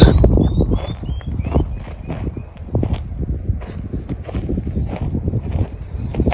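Footsteps crunching over dry, stony ground, with wind buffeting the microphone as a low rumble throughout. In the first couple of seconds a bird sings a quick run of about eight short, high, down-slurred notes, about three a second.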